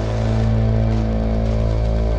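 Downtempo electronic music: sustained synth tones over a steady deep bass drone.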